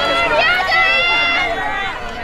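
High-pitched girls' voices shouting and calling out, with one long, drawn-out high call held for about a second.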